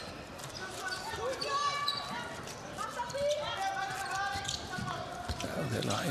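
A handball bouncing on an indoor court, with players' and spectators' voices in the background of a sports hall.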